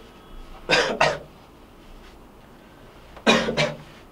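A man coughing: a quick double cough about a second in, then another cough near the end.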